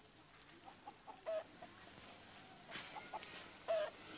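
Chickens clucking faintly in the background, a scatter of short calls with two louder ones, about a second in and near the end.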